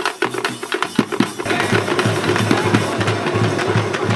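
Live folk drumming on two-headed barrel drums struck with sticks, fast sharp strokes. About a second and a half in the sound changes to music with a steady low beat.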